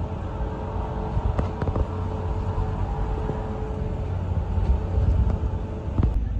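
Outdoor urban background with a steady low rumble, and a faint steady hum that stops about four seconds in; a few light clicks about a second and a half in.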